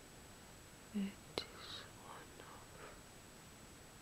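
A woman whispering softly for about two seconds, beginning about a second in with a brief low voiced sound and a sharp click. A faint steady high-pitched tone runs underneath.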